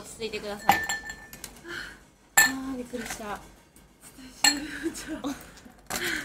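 Three sharp clinks of small hard objects handled on a table, the loudest in the middle, each leaving a brief ringing tone, with voices murmuring between them.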